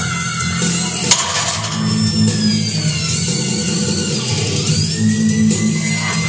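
Music with a steady low bass line and gliding, held synth tones, and a single sharp knock about a second in.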